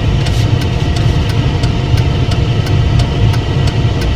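A car running, heard from inside the cabin as a steady low rumble.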